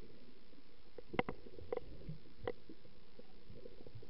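Muffled underwater sound heard with the microphone submerged: a steady low rumble of moving water, broken by a few short sharp clicks, about a second in, near the middle and again past two seconds.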